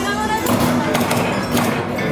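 Shooting-gallery rifle shots: sharp cracks about half a second in and twice more near the end, over background music and voices.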